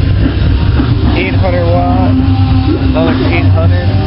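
Loud music with a singing voice played through a car audio system, two 12-inch Kenwood subwoofers and a 15-inch Power Acoustik subwoofer driven by two 800-watt Kenwood amps. The deep bass is the strongest part of the sound.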